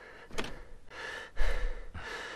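A car door clicking open, then clothes rustling and a dull thump as a man climbs into the seat, with another click near the end.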